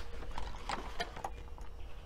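A few light, irregular clicks and knocks as a stack of hard drives is picked up and handled, with someone moving about.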